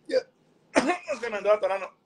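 A man's voice: a short "yeah" at the start, then about a second of voice sounds with several pulses.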